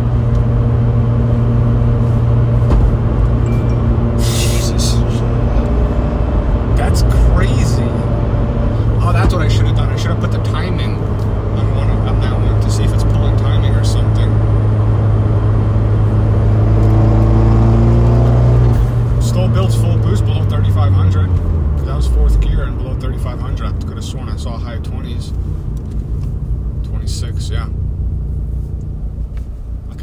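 Fiat 124 Spider Abarth's turbocharged 1.4-litre MultiAir four-cylinder, fitted with a larger drop-in turbo, heard from inside the cabin running steadily under way. About two-thirds of the way through its note falls over a few seconds as the car slows, then it settles to a lower steady drone.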